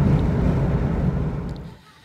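Steady road and engine rumble inside a moving vehicle's cabin, dying away near the end.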